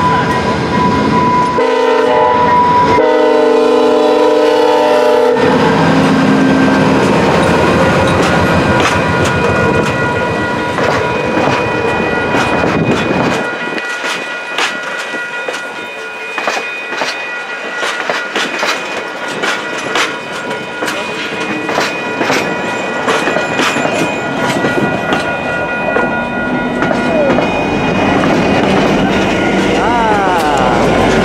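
VIA Rail passenger train led by locomotive 919 sounding its multi-note air horn in long blasts over the first five seconds or so. It then rolls past close by, the wheels clicking steadily over the rail joints. The trailing locomotive, 6416, rumbles up near the end.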